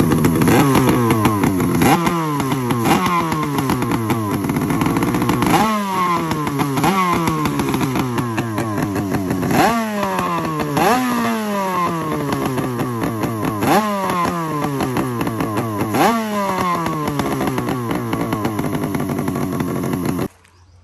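Kawasaki 550cc two-stroke engine being revved over and over: about ten sharp throttle blips, each a quick jump in pitch that slides slowly back down as the engine winds off.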